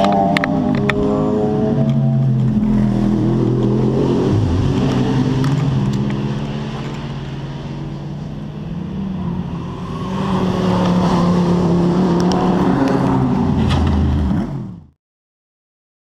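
Race car engines passing on the circuit, dipping a little about six seconds in and swelling again about ten seconds in. The sound cuts off suddenly about a second before the end.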